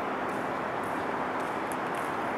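Steady outdoor urban background noise: a distant traffic hum with no distinct events.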